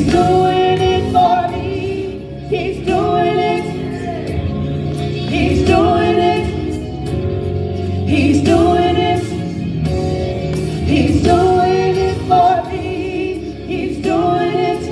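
Two women singing a gospel song into handheld microphones, in sung phrases a few seconds long.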